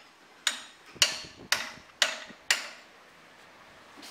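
Hammer blows on a Toyota 7A-series engine: five sharp strikes, about two a second, each with a short ringing tail.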